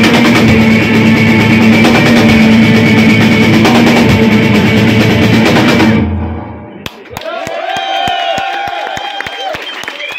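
Live rock band, with electric guitars and a drum kit, playing loudly, then stopping abruptly about six seconds in as the song ends. After that come quieter shouting voices and a fast, even run of sharp knocks, about four a second.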